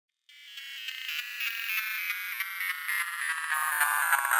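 Opening of a psytrance track: a rapidly pulsing, high synthesizer sound fading in from silence with no bass, reaching a little lower in pitch near the end.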